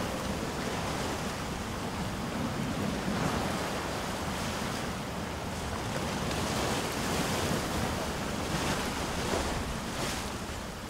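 Ocean surf breaking against a rocky shore: a steady wash of water noise that rises and falls in several swells.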